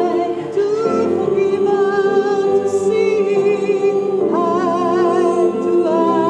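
A women's choir singing a slow gospel-style song in long held notes with vibrato; a new phrase begins about four seconds in.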